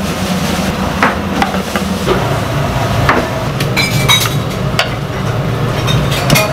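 Busy restaurant kitchen: scattered sharp knocks and a brief run of ringing clinks from earthenware bowls and utensils being handled, about four seconds in, over a steady low hum.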